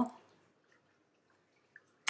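Near silence: room tone after the tail of a spoken word, with one faint, brief tick near the end.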